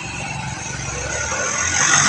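Road traffic heard from a moving vehicle: a low engine rumble and tyre-and-road hiss, swelling steadily louder as a small goods truck draws close alongside.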